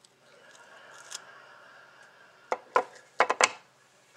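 Faint rustling, then a quick run of four or five sharp plastic clacks about two and a half seconds in, as a clear acrylic stamp block is lifted off an enamelled craft tile and handled.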